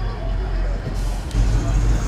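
A car engine's low rumble, swelling louder about a second and a half in, under faint voices.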